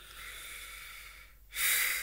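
A man breathing: one long breath lasting over a second, then a louder, shorter breath near the end.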